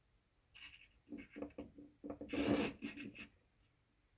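Handling noise on a countertop: a run of short rubs and scrapes, as plastic containers and the scale are moved about, with one longer, louder scrape about two and a half seconds in.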